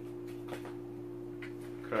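A steady low hum, with two faint sharp clicks of scissors snipping small plastic drone propellers off their frame.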